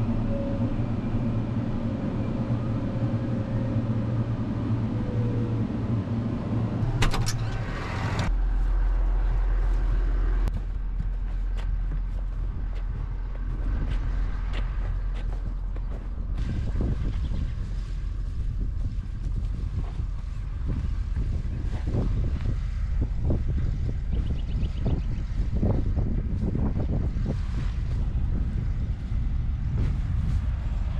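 Tractor engine running, heard from inside the cab, with a steady low hum. About seven to eight seconds in a door clatters and a heavy low rumble takes over outdoors. From about ten seconds on there are irregular footsteps and crunches over loose, dry tilled soil and corn-stalk trash.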